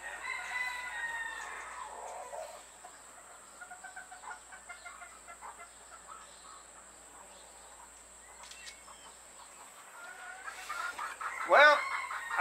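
A rooster crowing once near the start, followed by quieter, intermittent chicken clucking.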